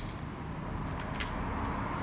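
A few faint, light clicks from a telescopic carbon fishing rod being turned and handled, its blank and metal guides ticking, over a steady low background hum.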